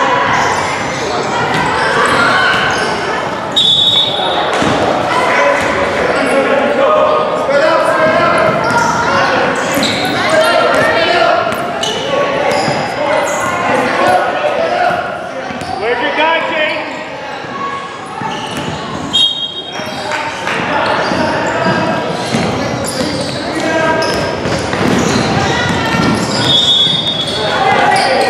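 A basketball being dribbled and bounced on a hardwood gym floor among many indistinct voices of players and spectators, echoing in a large hall. Three brief high-pitched tones cut through, about a third of the way in, past the middle, and near the end.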